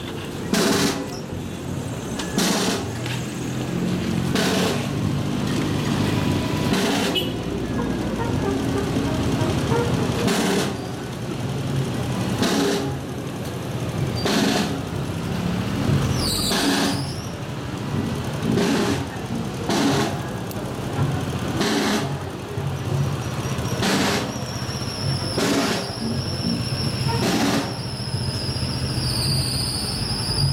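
Procession brass band with sousaphones playing a slow march: sustained low brass notes, with a bass drum and cymbal striking about every two seconds. A thin high tone comes in during the last several seconds.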